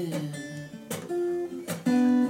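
Acoustic guitar strumming chords, about one stroke a second, each chord ringing on until the next.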